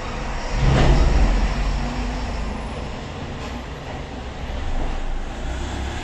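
A low rumble, swelling loudest about a second in and easing off, with a smaller swell near the end.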